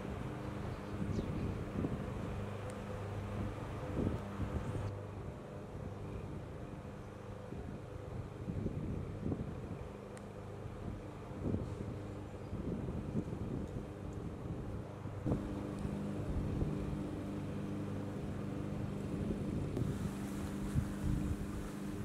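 Wind buffeting the microphone in irregular low rumbles, over a steady low droning hum.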